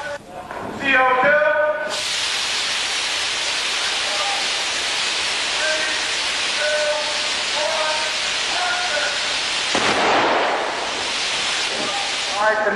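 Pressurised carbon dioxide gas blasting from set vents in a loud, steady hiss that cuts in suddenly about two seconds in, swelling deeper for a moment near the end. A short shout comes just before the gas starts.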